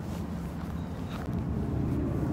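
Wind buffeting a phone's microphone: a steady low rumble, with faint footsteps of someone walking on a paved path.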